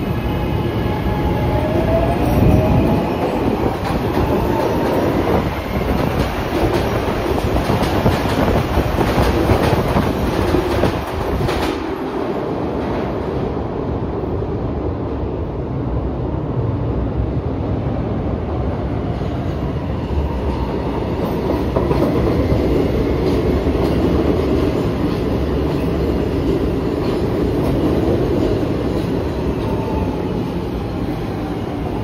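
Market-Frankford Line subway train pulling out of an underground station: its motors give a rising whine in the first few seconds as it picks up speed, over a heavy rumble and the clack of wheels on the rails. The rumble carries on steadily, a little duller after about twelve seconds.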